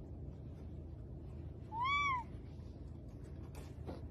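A cat's single short meow about two seconds in, about half a second long, rising then falling in pitch.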